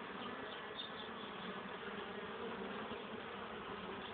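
Honeybees buzzing: a steady hum of many bees from a colony that is expected to swarm.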